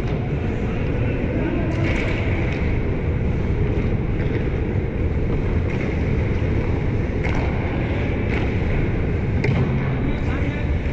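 Steady low rumble of an indoor ice arena's background noise, with a few faint echoing knocks from the play at the far end of the rink.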